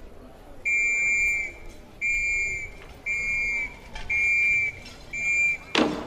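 Five short, steady, high-pitched whistle blasts, about one a second, giving the signal to a traditional drum troupe. A single loud drum strike comes near the end.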